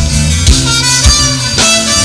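Live folk-rock band playing an instrumental passage: acoustic and electric guitars, a drum kit keeping a steady beat with a hit about every half second, and a wind instrument carrying the lead line. Recorded loud through a camcorder's microphone.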